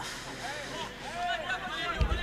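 Distant voices of players and spectators calling and shouting, several overlapping short calls over a faint murmur.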